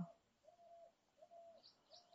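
Near silence, with a faint bird call repeated three times as short, even notes of the same pitch.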